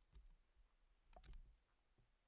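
Near silence: room tone, with a few faint clicks a little after one second in.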